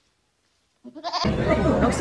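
About a second of near silence, then goats bleating over the low noise of a crowded tent.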